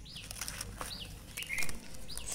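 A bird calling repeatedly, a short high downward chirp every second or so, over the dry crackle and rustle of charred banana leaf being peeled off grilled fish by hand. A louder short burst comes about one and a half seconds in.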